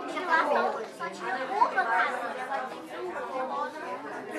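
Several people chatting at once: indistinct overlapping conversation, loudest in the first two seconds.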